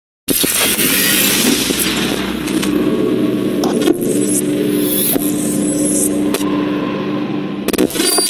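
Loud intro sound effects for an animated logo: a dense, noisy rushing swell over a steady low hum, broken by several sharp clicks. It starts abruptly.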